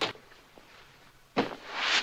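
A man blowing his nose hard into a handkerchief: a sharp noisy blast about a second and a half in, then a second one that swells up.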